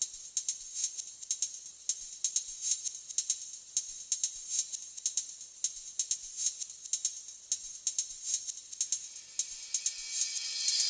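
Quiet, rapid shaker-like percussion ticking, about six to eight ticks a second with uneven accents, all high-pitched with no bass or other instruments under it: the sparse opening of a live band track.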